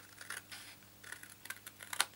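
Stampin' Up! Paper Snips, small scissors, cutting through card stock in a series of short snips as a small wedge is clipped out at a fold.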